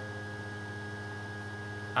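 Steady electrical mains hum with a faint steady high tone and light hiss, the background noise of the recording.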